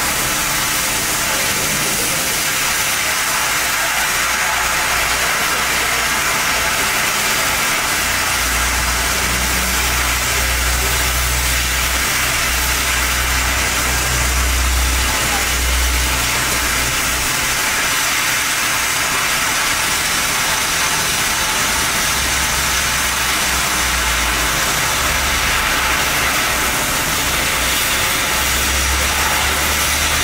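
Oxy-fuel cutting torch hissing steadily as it cuts through a steel plate. A low rumble comes and goes underneath, from about a third of the way in and again in the last third.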